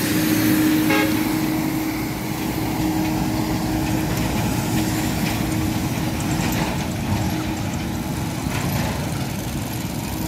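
Heavy lorry engine running close by on a dirt road, with steady vehicle noise and a brief horn toot about a second in.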